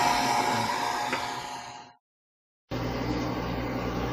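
Handheld hair dryer blowing on a washing machine's wet wiring connectors, fading out about two seconds in. After a brief silence, an LG front-load washing machine runs with a steady low hum, working normally after its connectors were dried.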